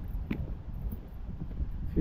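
Wind rumbling on a handheld camera's microphone while walking briskly, with uneven scuffs of footsteps and a short click about a third of a second in.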